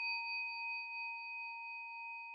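A bell-like chime sound effect: a single struck tone that rings on with several clear high overtones, slowly fading.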